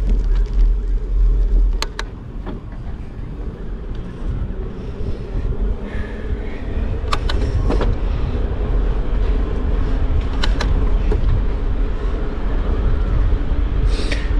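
Wind rumbling on the microphone and tyre noise of a bicycle riding along a concrete path, with a few sharp clicks.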